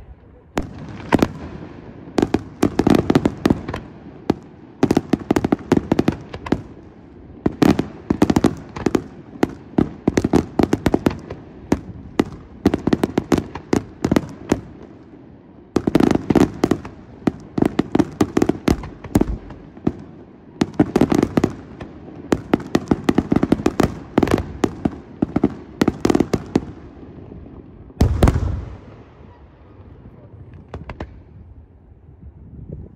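Aerial fireworks shells bursting in rapid volleys of bangs and crackles. They come in waves with short lulls between, and a deep boom lands near the end.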